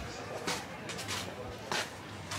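Street ambience of people's voices talking at a distance. Two short, sharp scuffs come about a second apart.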